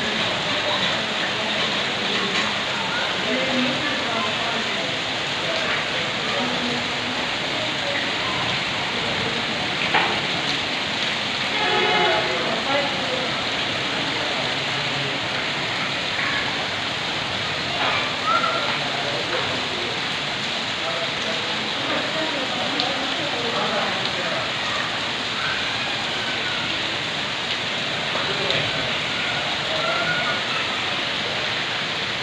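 Heavy rain falling steadily on a wet concrete yard, a constant hiss. A faint voice is heard briefly about twelve seconds in.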